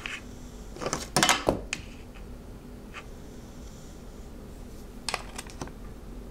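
Dry-erase markers clicking and clattering against a whiteboard's marker tray: a loud cluster of sharp clicks about a second in and a few more near the end, over a faint steady hum.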